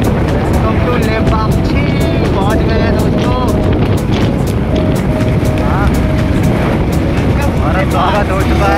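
Loud rushing wind buffeting the microphone, with road noise from a motorcycle riding along a highway, under background music.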